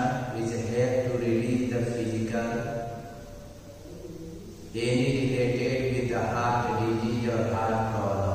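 A man chanting a mantra in long, held notes. The chant fades about three seconds in and comes back strongly just before five seconds.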